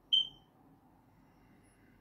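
A single short, high-pitched electronic beep just after the start, fading away quickly, over faint low background noise.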